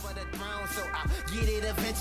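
Hip hop track with a deep bass beat and a rapper's voice, getting louder as it comes in.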